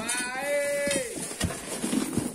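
One drawn-out, bleat-like vocal call about a second long, wavering at first, then held, then falling away in pitch. Two short knocks follow about a second and a half in.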